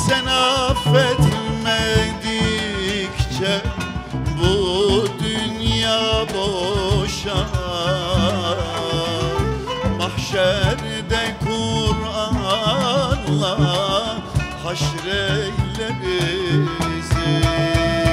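Live Turkish Sufi (tasavvuf) music: a male voice sings melismatic lines with heavy vibrato over a small ensemble of strings and hand percussion, the drum strokes running steadily underneath.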